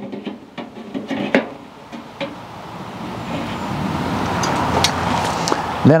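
Metal clinks and knocks as the steel access door is fitted onto a Masterbuilt charcoal bullet smoker, followed by a steady rushing noise that builds over the last few seconds.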